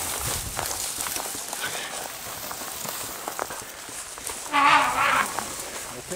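Hurried footsteps crunching through dry grass and brush, with twigs and branches rustling and snapping against clothing and the camera. About four and a half seconds in, a short, loud pitched call, like a voice, rises over it for under a second.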